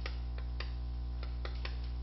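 Chalk tapping and scratching on a blackboard as characters are written: a quick, irregular series of small clicks over a steady low hum.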